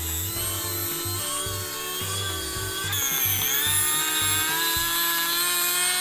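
Cordless electric screwdriver running steadily as it drives a metal screw into a plastic float bracket; its whine dips in pitch about halfway through and climbs back.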